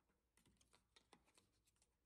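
Faint, quick clicks and light scrapes of a plastic key card going into the card slot of a hotel room door lock.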